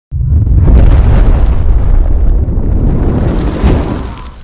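Cinematic logo-intro sound effect: a deep rumbling boom that starts suddenly and carries on loud, with a sharper hit near the end before it begins to fade.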